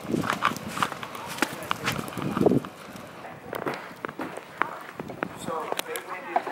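Footsteps in fresh snow as someone walks, a string of irregular soft steps, with brief faint voices now and then.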